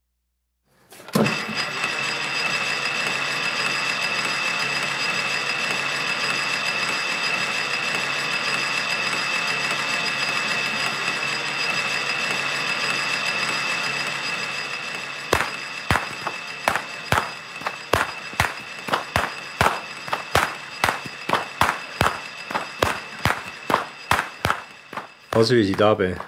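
A steady hiss for the first half. Then, from about halfway in, a long run of sharp whip cracks, about two to three a second: the loud cracking of traditional Swiss Chlausklöpfen whips with long braided lashes.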